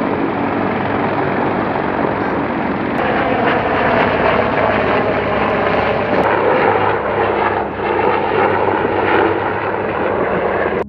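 Military helicopters running, a loud dense rotor and turbine noise. The sound changes character about three seconds in and again about six seconds in as the shots cut from one helicopter to another.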